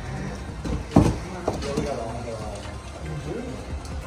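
Indistinct voices over faint background music, with one sharp thump about a second in, the loudest sound here.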